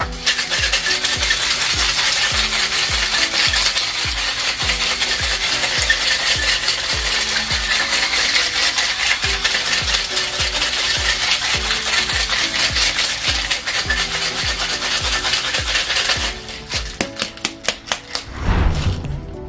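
Stainless steel tin-on-tin cocktail shaker being shaken hard, the ice inside rattling against the tins at about three strokes a second. The shaking stops about sixteen seconds in.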